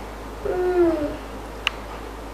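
A girl's voice making a short, held, hoot-like 'ooh' with a steady pitch, about half a second in, then a single sharp click near the end.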